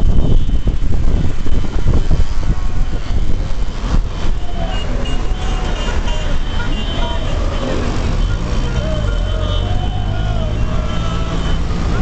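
Moving car's road and engine noise with wind buffeting the microphone at the open window, loudest in the first few seconds, mixed with passing motorbikes and cars. From about a third of the way in, people's voices call out over the traffic.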